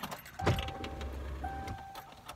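A motor vehicle outside the car: a knock, then a low rumble with a steady high-pitched whine for about a second, heard from inside the cabin.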